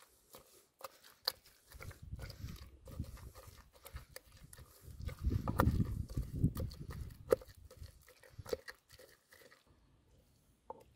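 Wooden masher pounding stewed lamb and potatoes in a stone dizi pot: soft, wet mashing thuds that come in two spells, the heavier one in the middle, with a few sharper knocks near the end. The broth has been poured off and the solids are being mashed.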